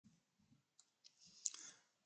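Near silence with a few faint, scattered clicks, then a soft hiss about a second and a half in that carries a slightly louder click.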